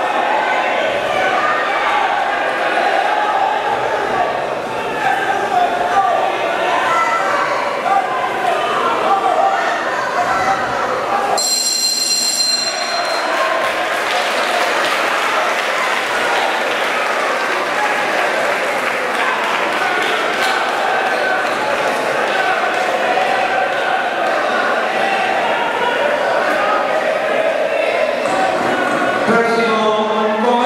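Crowd and corner voices shouting throughout in a large, echoing hall around a fight ring. About eleven seconds in, the ring bell rings once, a high ring lasting about a second and a half, marking the end of the round.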